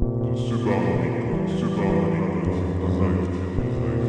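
Modular synthesizer drone built around a Moog Subharmonicon: a steady chord of layered low tones whose notes shift near the end. From about half a second in, a granular-chopped voice sample from a Morphagene plays over it without clear words.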